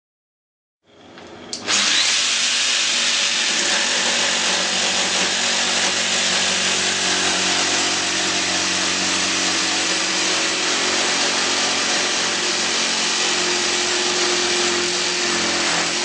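Protool JSP 120 E 720 W jigsaw starting up about a second in, then running steadily at full speed (2900 strokes per minute) with pendulum action on setting 3. It is sawing through a thick pine beam with a coarse fast-cutting blade.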